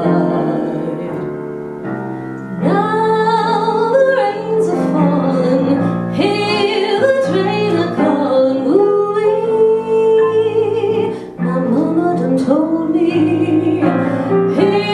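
A woman singing into a microphone with live piano accompaniment, holding long notes in each phrase.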